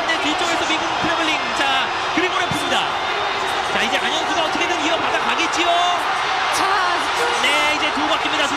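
Arena crowd cheering and shouting steadily, many voices at once, with scattered high whoops.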